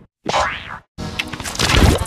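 Electronically distorted, spliced sound effects. First comes a short sweeping tone that rises and falls, then a brief cut to silence, then a loud, noisy burst heavy in the bass.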